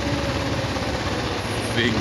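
Kawasaki EN 500's parallel-twin engine running steadily under way, with wind rushing over the handlebar-mounted microphone.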